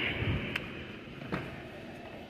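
Warehouse store background hum, with two light clicks about half a second and a second and a half in.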